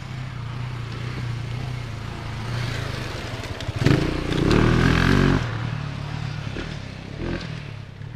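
KTM 690 single-cylinder motorcycle engine running, with a louder rev lasting about a second and a half, about four seconds in, then dying away near the end.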